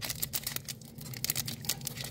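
Foil wrapper of a trading-card pack crinkling as fingers work at its crimped seal: a quick, irregular run of small crackles, thickest in the first second.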